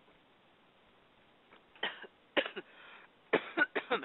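A person coughing, several short coughs in a fit that starts about two seconds in, the last few coming quickly one after another.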